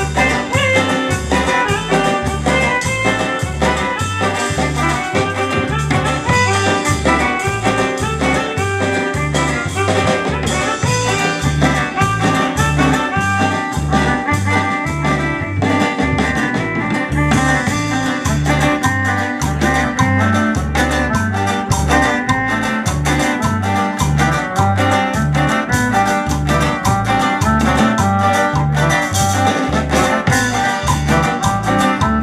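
Live band dance music with keyboard and guitars over a steady, regular bass beat.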